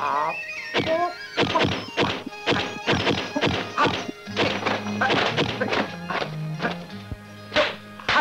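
Kung fu film soundtrack: music under a rapid series of dubbed punch and swish sound effects, about two or three a second. A low held note joins the music about four seconds in.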